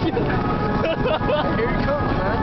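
Busy city crossing: a steady wash of traffic and crowd noise with nearby voices, and a few held tones running over it.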